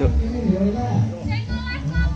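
Several people talking at once over background music.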